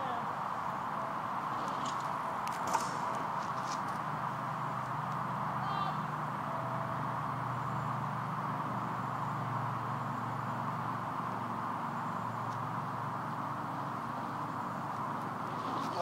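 Steady outdoor background noise. A low hum builds from about four seconds in, is strongest around the middle and fades, and there is one short click about three seconds in.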